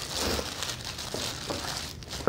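Tissue paper crinkling and rustling as hands unfold it to unwrap a small item.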